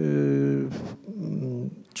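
A man's drawn-out hesitation sound into a handheld microphone, held for under a second with the pitch sinking slightly. It is followed by a brief hiss and a quieter, wavering hum before he goes on speaking.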